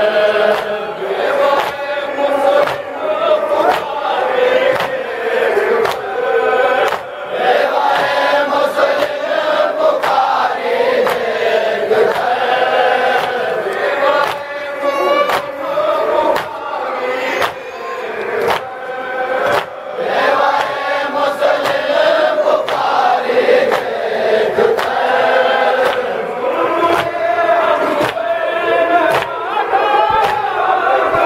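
A group of men chanting a noha, a mourning lament, together, kept in time by a steady rhythm of sharp slaps from chest-beating (matam).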